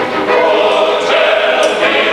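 Male opera chorus singing loudly together, many voices on sustained notes.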